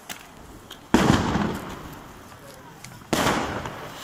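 Two loud firecracker bangs, about two seconds apart, each trailing off over about a second, with a few faint pops between them.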